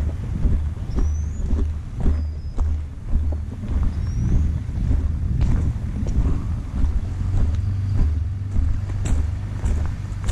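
Wind buffeting a body-worn camera's microphone, a low uneven rumble that pulses and gusts, with scattered light crunches and clicks from movement on the leaf-littered ground.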